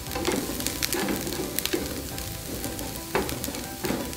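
Chopped onion and garlic frying in oil in a nonstick pan, sizzling and crackling as a wooden spatula stirs and scrapes through them. Two louder clicks come about three seconds in and again near the end.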